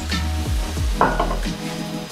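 Sizzling and hissing as Prosecco is poured into a hot frying pan of monkfish sautéing in oil, over background music.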